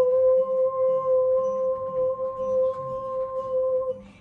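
A woman's voice holding one long, steady "ooh" tone, about four seconds, that stops just before the end: a long vocal tone of the kind used in sound-healing toning.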